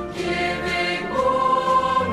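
A choir singing a school song, with a note held steadily through the second half.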